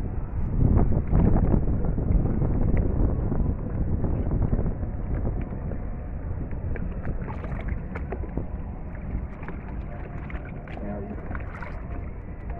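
Wind rumbling on the microphone, loudest for the first few seconds, then easing, with scattered small clicks and knocks of handling later.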